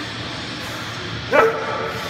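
A man's short, loud strained grunt while straining through a heavy leg press rep, about 1.4 s in, its pitch jumping up and then held for about half a second.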